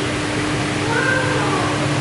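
Steady low hum and hiss of an aquarium hall, with a brief high-pitched voice sliding down in pitch about a second in.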